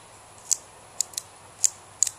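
Metal guillotine cigar cutter being worked open and shut by hand, giving four sharp clicks, about half a second apart.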